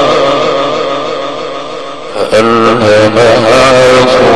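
A male sheikh's melodic Arabic religious chanting, with a held, ornamented note that fades away over the first two seconds. A new phrase starts strongly a little past halfway.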